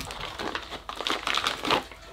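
Foil-laminated ration pouch and plastic-wrapped emergency ration biscuits crinkling irregularly as they are handled.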